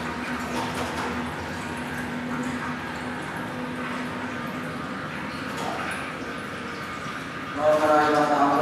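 Male voice chanting Vedic mantras at a low, steady pitch, softer through the middle. Louder chanting starts just before the end.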